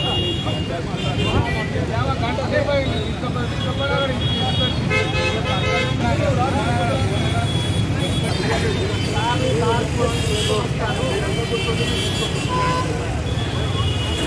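Crowd of people talking over one another in heavy street traffic, with engines rumbling and vehicle horns honking several times.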